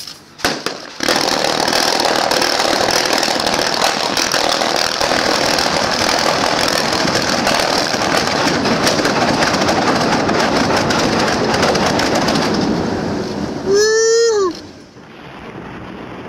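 Underwater explosive charge going off: a few sharp cracks, then about a second in a sudden loud, crackling rush of erupting water and spray that lasts about eleven seconds before dying away.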